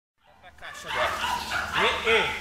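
Kuvasz dogs vocalizing in short, high calls as they run, with a woman's voice calling out near the end.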